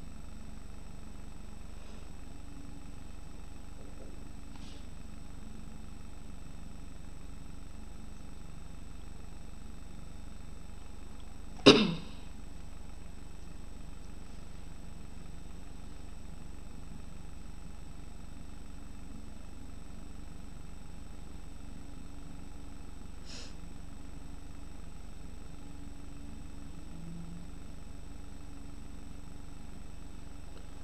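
Steady low room hum and hiss with a few faint clicks, broken once about twelve seconds in by a single short, loud cough.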